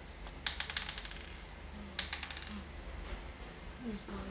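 Montessori golden bead material clicking and clattering as it is handled: a rapid run of small clicks about half a second in, and a shorter, sharper run at about two seconds.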